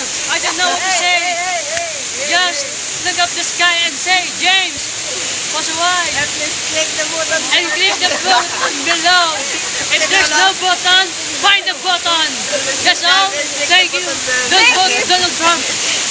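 A close waterfall's steady rush of falling water, with voices chattering and laughing over it.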